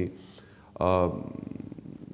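A man's voice pausing mid-sentence, then a drawn-out hesitation sound about a second in that trails off into a creaky rattle of rapid, even pulses (vocal fry) before he goes on speaking.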